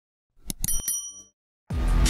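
Subscribe-button animation sound effect: a few sharp mouse-click ticks and a short, bright bell ding that rings out for about half a second. Music starts just before the end.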